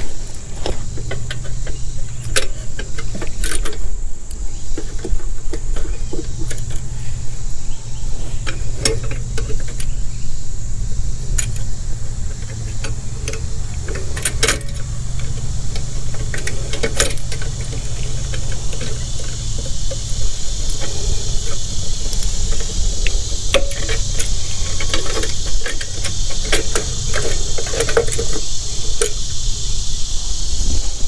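Small metal parts clicking and clinking as a carburetor and its throttle linkage are handled and fitted onto a small engine, in scattered short clicks over a steady low rumble. A steady high hiss grows louder in the second half.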